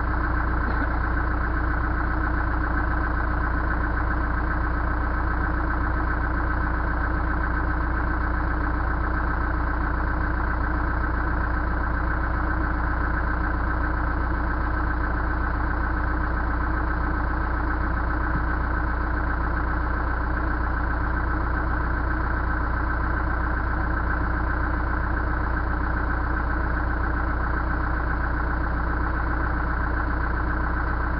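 Backhoe engine idling steadily.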